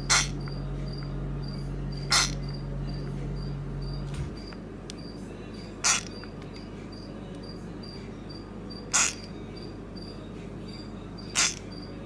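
A small pink frog screaming when poked: five short, harsh squeals a few seconds apart. Underneath runs a steady, high, pulsing chirp, with a low hum that stops about four seconds in.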